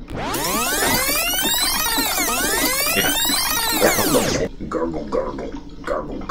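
An electronic sound effect: many pitched tones gliding up and down together in sweeping arcs for about four seconds, then cutting off abruptly.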